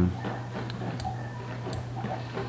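A few sharp, irregular computer mouse clicks as Lightroom's colour sliders are adjusted, over a steady low electrical hum.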